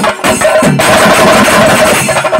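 Chenda drums beaten with sticks together with clashing ilathalam hand cymbals in a traditional Kerala chenda melam ensemble: loud, fast, dense drumming with a steady ringing note held over the beat.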